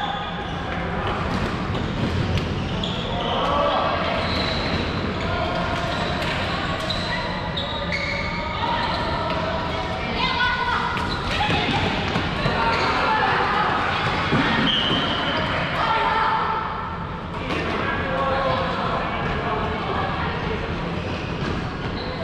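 Floorball play in a sports hall: plastic sticks clicking against the ball and each other in many short knocks, with players' voices calling out, all echoing in the hall.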